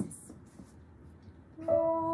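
A woman's voice sings one long, steady note near the end, after a short quiet pause.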